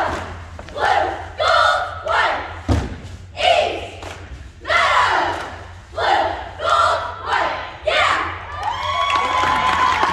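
A cheerleading squad shouting a cheer in unison, one loud shouted syllable roughly every three-quarters of a second, with a single low thump a little under three seconds in.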